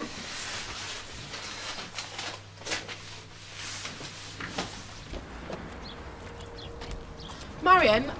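Scattered light knocks and rustles of hands handling a record turntable, then a quieter stretch, with a woman's voice starting near the end.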